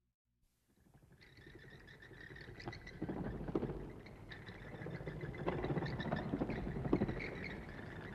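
Bats squeaking and chittering in many small overlapping calls, mixed with light clicks and flutters. The sound fades in from silence about a second in and grows louder a few seconds later.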